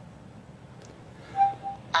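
Room tone, then about a second and a half in a short, soft two-part electronic chime from Cortana on the phone, just before Cortana's synthetic female voice begins answering at the very end.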